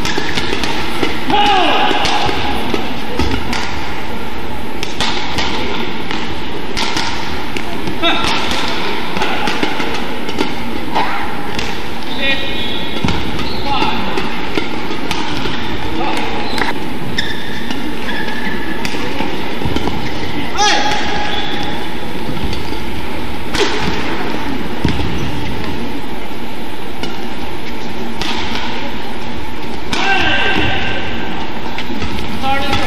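Indoor badminton rallies: sharp racket strikes on the shuttlecock and short squeaks of players' shoes on the court mat, over a constant murmur of crowd and hall noise.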